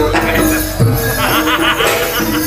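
Javanese jaranan gamelan music playing, with a wavering high melody line from about a second in.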